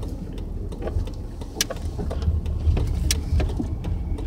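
Car cabin noise while driving: a steady low rumble from the engine and road, with a few faint clicks.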